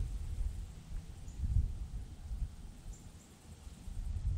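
Uneven low rumble on a handheld GoPro's microphone, swelling about a second and a half in and fading toward the end.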